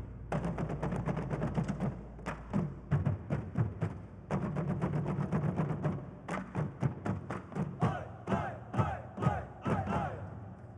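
Fast, dense drumming for a sisingaan lion-carrying dance, with rapid sharp strikes several times a second. Short shouted calls come over it in the last two seconds.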